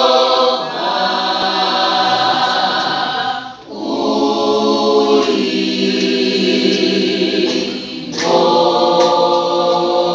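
High school choir of mixed voices singing unaccompanied in parts, a gospel song in full chorus, with two short breaks between phrases, the first about a third of the way in and the second past the middle.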